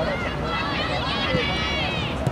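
Several high-pitched voices talking and calling out over one another, with a steady low outdoor rumble underneath.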